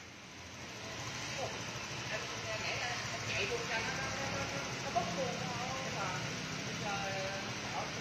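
Fuel-injected scooter engine idling steadily, a low even hum, with faint voices in the background.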